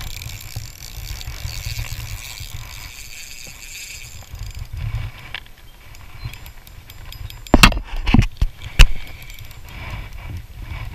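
Handling noise from a spinning reel being worked by hand while fishing, over low wind rumble on the microphone, with a cluster of four or five sharp, loud knocks a little over seven seconds in.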